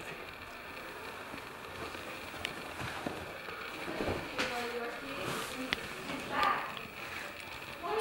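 Quiet room sound with faint, indistinct voices in the background and a few small clicks.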